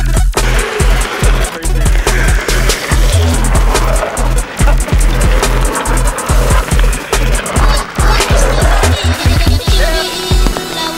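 Longboard wheels rolling over wet asphalt, under electronic dub music with a heavy, steady bass beat that is the loudest part.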